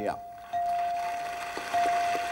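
Wheel of Fortune puzzle-board letter-reveal chime: a steady electronic tone, struck anew about half a second in and again near the end, one chime for each of the three A's lighting up on the board.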